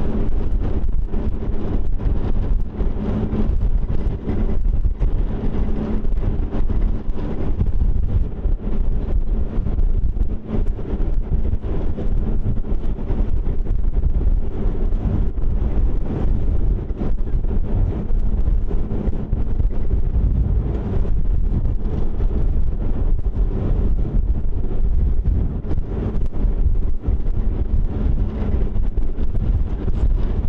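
Wind buffeting the microphone on the open deck of a moving Emerald-class harbour ferry, over the steady hum of the ferry's engines.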